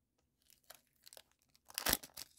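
Foil trading-card wrapper crinkling and tearing as it is peeled open by hand: a run of short crackles starting about half a second in, with the loudest rip near the end.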